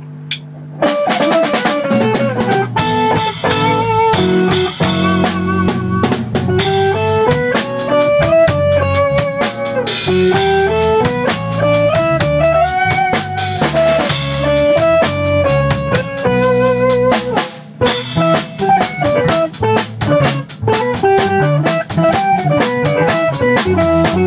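Band music: an electric guitar plays a melodic lead line over a drum-kit beat. It starts about a second in and drops out briefly about three-quarters of the way through.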